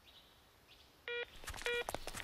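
Cell phone keypad beeping as a number is dialed: two short electronic beeps about half a second apart, starting about a second in.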